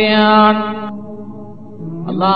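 A man's voice holding one long chanted note that dies away with echo about a second in, over a steady low drone.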